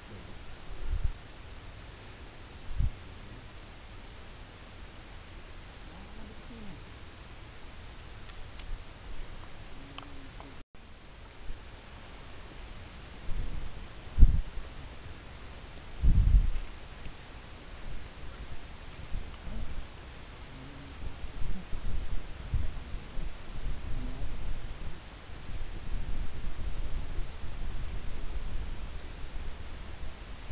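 Footsteps and rustling on a dry, leaf-littered forest trail, with dull bumps from the handheld camera. A few scattered thumps come in the first half, then a steady run of them in the second half as the walking goes on.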